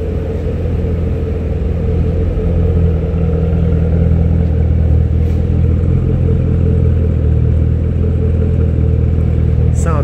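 2013 Chevrolet Camaro ZL1's 6.2-litre supercharged V8 idling steadily, heard from the dual exhaust at the rear of the car. The low, even exhaust note grows a little louder over the first two seconds, then holds without any revving.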